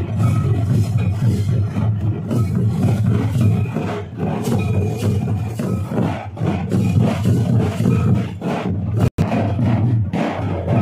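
A group of large shoulder-slung barrel drums beaten together in a loud, dense, steady rhythm, with a crowd all around. The sound cuts out for a moment about a second before the end.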